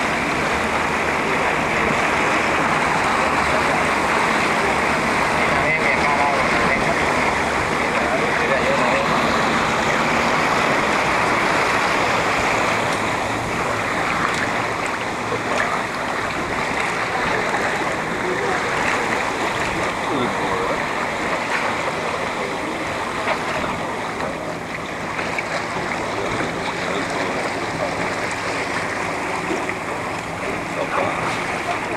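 Motorboat under way at speed: water rushing and splashing along the hull over a steady engine drone.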